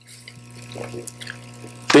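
Quiet pause in conversation: room tone with a steady low hum, and a faint murmured voice about a second in.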